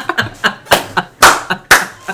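Several sharp hand claps, about six or seven at uneven intervals over two seconds.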